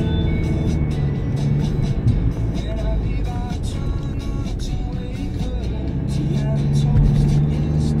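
Music playing over the car's audio system inside a moving car, with engine and road noise underneath. The music cuts out suddenly at the end as a navigation voice prompt begins.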